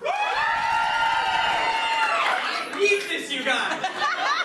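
A voice holding one long, high, steady note for about two seconds, sung or drawn out, followed by shorter broken vocal sounds, with light audience chuckling.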